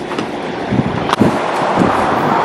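Steady rushing wind noise on the microphone, with a sharp knock about a second in.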